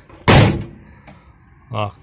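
The cab door of a Tatra T148 truck being shut: one loud thud about a quarter second in, with a short ring-out.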